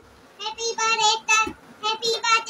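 A child's voice singing a melody in short syllables with held notes, starting about half a second in after a brief pause.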